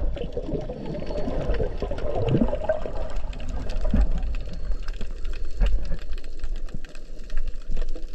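Underwater sound of a submerged camera: water sloshing and gurgling, with a constant crackle of small clicks and a short rising whoosh a little after two seconds.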